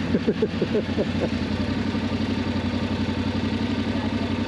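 Yamaha Ténéré 700's parallel-twin engine idling steadily.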